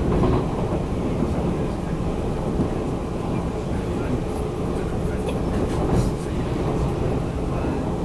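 Steady rumble of a TEMU1000 Taroko Express tilting electric train running at speed, heard from inside the passenger car, as another train passes close alongside on the next track.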